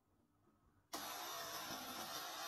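A high-voltage plasma vortex device switched on: about a second in, a steady hiss and buzz starts suddenly out of near silence. It is the sound of the discharge ionizing the air inside a ring of copper coils.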